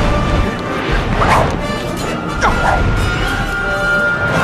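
Dramatic film score laid over sword-fight sound effects: clashing hits of blades and two sweeping swishes in the middle.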